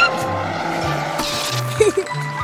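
Cartoon toy car zooming sound effect, a rushing whoosh about a second in, over background music with a stepping bass line. A short voice sound comes near the end.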